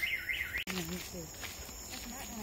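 Car alarm siren warbling up and down about four times a second, cut off abruptly less than a second in; faint distant voices follow.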